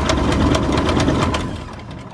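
Continental O-200 aircraft engine being cranked by its electric starter, turning over fast in rapid even compression pulses without firing, then winding down and stopping near the end. It does not catch because no fuel pressure is reaching it after eight years of sitting.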